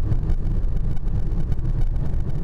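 Steady low rumble of a car driving along a road, heard from inside the cabin: tyre and engine noise.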